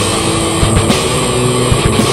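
Heavy rock music: a dense, distorted electric guitar wall with drum hits.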